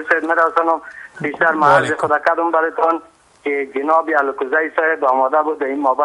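Only speech: a man talking over a telephone line, his voice thin and narrow, with a short pause about three seconds in.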